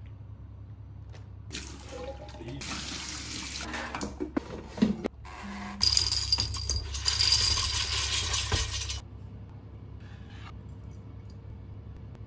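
Crunchy air-fried chickpeas tipped from the air fryer basket into a glass container: a dense rattle of many small hard pieces hitting glass, lasting about three seconds and stopping suddenly. A softer rustle with a few knocks comes before it.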